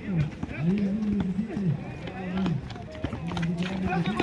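A man's voice talking close by, almost without a break, over scattered knocks and footsteps from players running and a basketball bouncing on the asphalt court.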